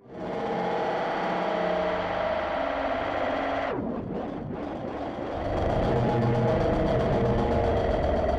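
Experimental electronic music: a dense, loop-processed drone that comes in suddenly, dips in a falling-then-rising filter sweep about halfway through, then swells with a deep rumble.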